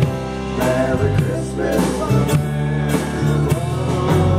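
Live band playing: electric guitar, mandolin, bass guitar, keyboard and drum kit with repeated cymbal hits, with a man singing over it.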